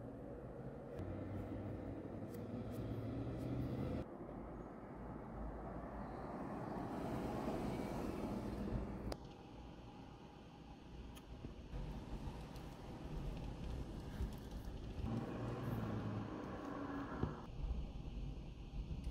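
Road traffic at an intersection heard from inside a parked car: a steady low rumble that swells as a vehicle passes about seven to nine seconds in, with a few abrupt jumps in the sound.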